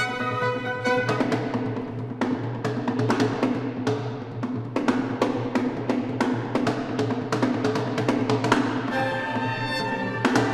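Background music: a percussion-heavy score of repeated drum hits, with sustained instrument tones over the first second and again near the end.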